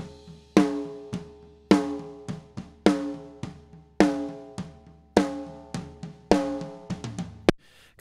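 Recorded snare drum played back raw, with no compression: a strong hit a little more than once a second with softer strokes between, each hit leaving a pitched ring.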